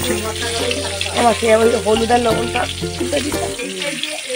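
Whole potatoes sizzling as they fry in oil in an aluminium kadai, with a metal spatula scraping and stirring them. Melodic background music plays over it and is louder than the frying.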